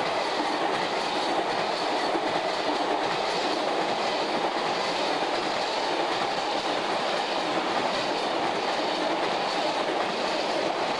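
Freight train of bogie tank wagons passing close at speed: a steady noise of wheels running on rail.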